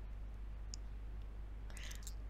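Quiet room tone with a steady low hum under faint hiss, one short faint click about three quarters of a second in, and a soft noise near the end.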